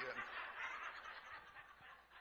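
A congregation laughing softly at a punchline, many voices together, dying away toward the end.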